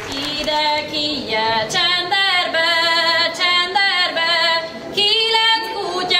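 A girl singing a Hungarian folk song unaccompanied, one voice in long, wavering held notes, with a short break for breath near the end.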